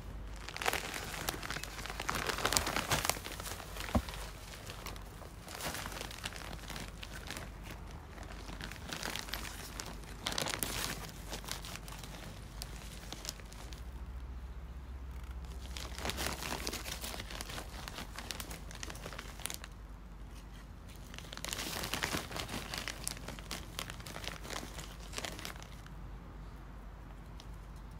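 A plastic bag of soil crinkling and rustling while soil is scooped from it for planting, in about five bursts of a second or two each, with quieter gaps between.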